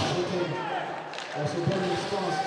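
Faint speech in the background over low arena ambience, much quieter than the commentary on either side.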